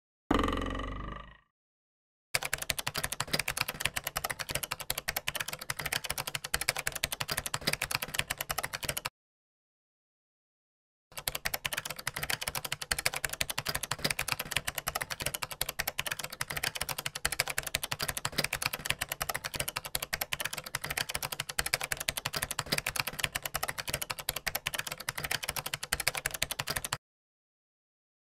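Typewriter-style typing sound effect: rapid keystroke clicks in two long runs, with a pause of about two seconds between them. A brief fading sound comes just before the typing starts.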